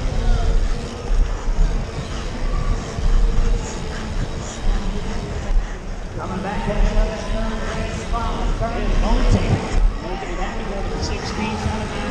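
Wind rumbling on a helmet camera and bike tyres rolling over a packed-dirt BMX track during a race, with a public-address announcer's voice echoing in the arena, clearest in the second half.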